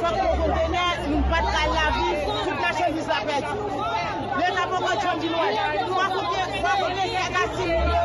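Several people talking loudly at once, with a woman's voice to the fore and others speaking over her. A few low rumbles sound near the start and again near the end.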